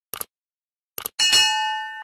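Subscribe-button sound effect: two quick double mouse clicks, then a bell notification chime that rings with several steady tones and fades.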